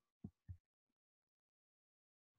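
Near silence, with two brief soft low thumps in the first half second.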